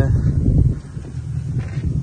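Low, uneven rumble of wind buffeting the phone's microphone, easing a little after the first half-second, with faint knocks of the phone being handled.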